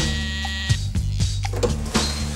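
Doorbell ringing in one steady tone that stops under a second in, over background music.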